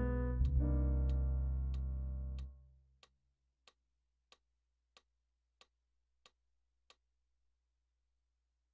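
Roland FP-50 digital piano playing a closing passage that ends on a held chord, released about two and a half seconds in. A metronome ticks steadily throughout, about three clicks every two seconds, heard alone for seven more ticks after the chord before it stops.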